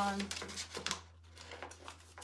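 Paper crackling and rustling as the backing sheet is handled and peeled from an IOD rub-on decor transfer: a few short crackles in the first second, then quieter. A low steady hum lies underneath.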